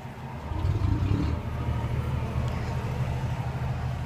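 Low, steady engine rumble that comes up about half a second in and then holds.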